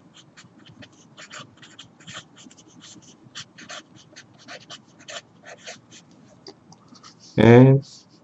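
Felt-tip marker writing on paper, quick scratchy strokes several times a second. Near the end a person's voice gives one short, loud sound.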